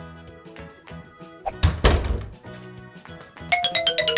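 Background music with a heavy door thud about a second and a half in, as a door is shut. Near the end comes a quick run of short plucked notes.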